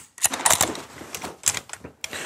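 Irregular light clicks and rattles of metal rope access hardware (carabiners and a descender) being handled on the rope.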